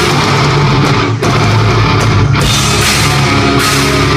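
Thrash metal band playing live: distorted electric guitars, bass and a fast drum kit, with no vocals. There is a momentary break a little over a second in.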